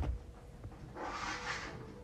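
Thin plastic window film rustling and crinkling as it is handled, a rush of about a second near the middle, with a low thump at the start and faint background music.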